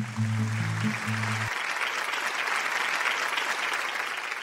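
Audience applause, with low sustained music notes underneath that stop about one and a half seconds in; the applause carries on alone and begins to fade near the end.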